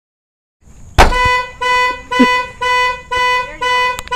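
Dodge Durango SUV's horn honking in a regular series of six short, even blasts, about two a second, right after a sharp click.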